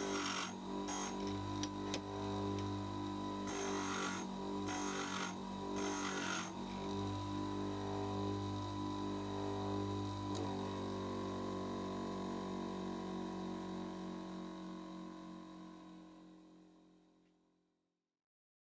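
Bench grinder running with a steady motor hum while an end mill's end cutting edges are ground on its wheel: short bursts of grinding noise, each about half a second, come a few seconds in. The grinder then runs on alone and the sound fades away near the end.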